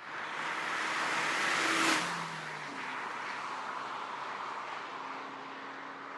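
A Chevrolet Cruze hatchback with a 1.8-litre four-cylinder engine drives past. The engine and tyre noise swell to a peak about two seconds in, and the engine note drops to a lower pitch as the car passes. A steadier, fading sound follows as it drives away.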